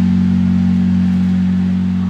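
A live rock band holding one sustained low chord. Bass and electric guitar ring steadily on the same low notes under a wash of noise, with no singing.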